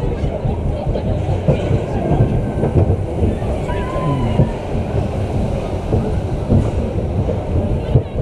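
Family roller coaster train of barrel-shaped cars rolling along its steel track: a steady, loud rumble of the wheels with irregular clattering, heard from a camera riding on the car.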